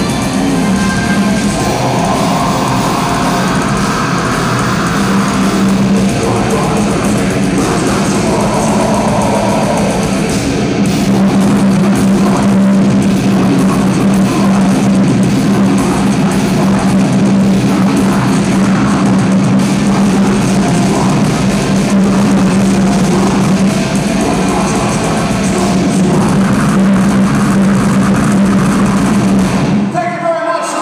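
Heavy metal band playing live at full volume: distorted electric guitars and a drum kit, with a heavy low note held under much of the song, which stops abruptly at the very end.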